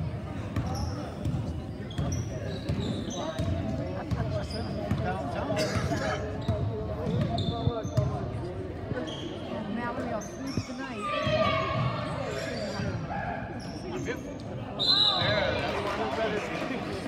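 Basketball game on a hardwood gym floor: the ball bouncing as it is dribbled, sneakers squeaking in short scattered chirps, over spectators' voices and shouts that echo in the gym. The voices rise briefly twice, in the second half.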